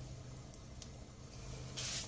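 Faint handling of a plastic piping bag filled with whipped cream: a few soft ticks, then a short rustle near the end, over a low steady hum.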